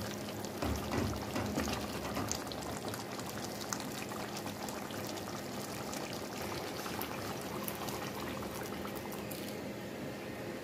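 Thick palm-oil stew simmering in a pot, a steady bubbling crackle of many small pops. In the first couple of seconds a plastic ladle stirs through it with a few soft low bumps.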